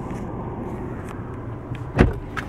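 Steady low rumble of a car idling, heard from inside the cabin, with a few faint clicks.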